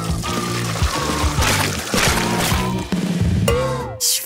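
Background music with a drum beat over a thick blended lemon drink being poured from a blender jug through a mesh strainer into a plastic cup. A tone glides downward near the end.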